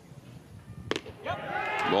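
A baseball pitch popping into the catcher's mitt once, sharply, about a second in, followed by voices.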